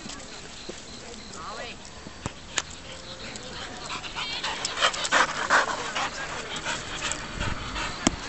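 A young golden retriever panting as it runs during fetch, alongside a person's voice in short bursts.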